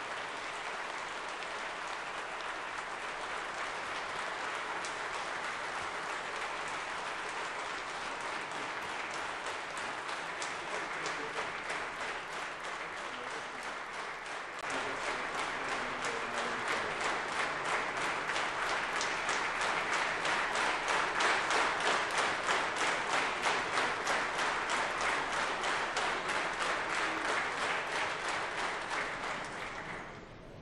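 Standing ovation from a large hall of lawmakers: sustained applause that grows louder about halfway and settles into an even rhythmic clapping, about two claps a second.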